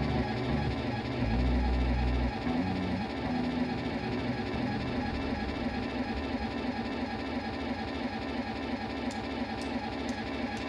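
A live rock band's electric guitars play a sustained, droning wash of sound over held low notes that shift every second or so, with no clear strumming or beat.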